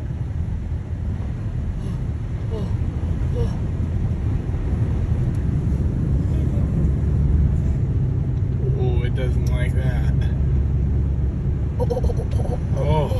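A car driving through standing floodwater on a street, heard from inside the cabin. The tyres make a low rumble through the water, which grows louder about four seconds in as the car throws spray up over its side.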